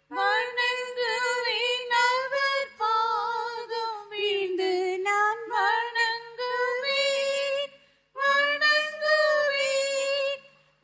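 A high solo voice singing a worship song in short phrases, with a brief pause about eight seconds in.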